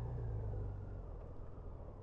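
A passing vehicle's low rumble and road noise, fading steadily away.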